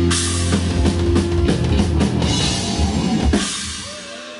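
Live hardcore punk band, distorted bass and guitar over pounding drums and cymbals, playing loud. A little over three seconds in the band stops on a final hit, which rings and fades out as the song ends.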